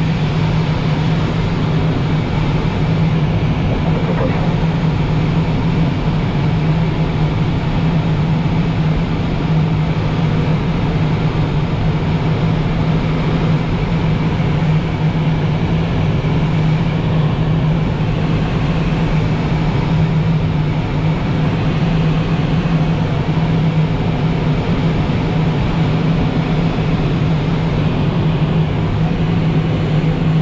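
Steady rush of airflow around a Blaník glider in gliding flight, mixed with wind noise on the microphone, with no engine.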